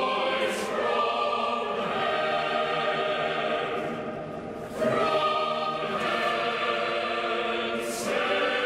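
A church choir sings slow, solemn sacred music in sustained chords. The sound dips in the middle for a breath between phrases and comes back louder with a new phrase about five seconds in.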